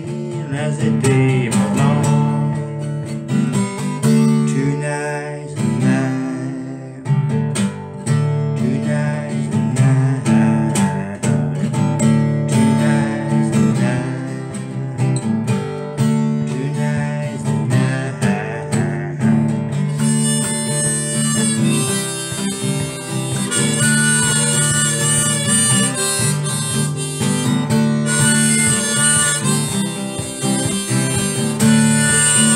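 Strummed steel-string acoustic guitar with a harmonica in a neck holder playing an instrumental break. The harmonica moves up to high, held notes about two-thirds of the way through.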